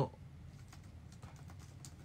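Faint, irregular light clicks scattered over a low background hum.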